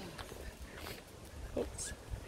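Wind buffeting the microphone as a low, uneven rumble, with a couple of faint, brief sounds near the end.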